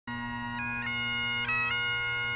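Highland bagpipes playing a slow dirge: steady drones under a chanter melody that changes note a few times over held tones.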